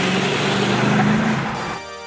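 Dodge Charger R/T's HEMI V8 running at a steady note as the car pulls away, fading out about one and a half seconds in. Music starts near the end.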